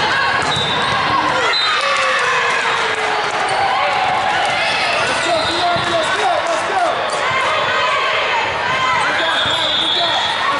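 Indoor volleyball play: athletic shoes squeaking on a hardwood court, the ball being struck, and many players' and spectators' voices calling and shouting, all echoing in a large hall.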